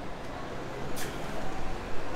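Steady low rumble of an intercity coach and bus-station traffic, with one brief sharp hiss about a second in.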